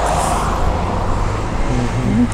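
Road traffic on the highway: a vehicle going past, a steady rush of tyre and engine noise that is loudest near the start.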